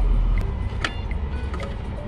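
A drive belt being worked by hand onto the pulleys of a BMW engine: a few sharp clicks over a steady low rumble, with one clear click a little under a second in.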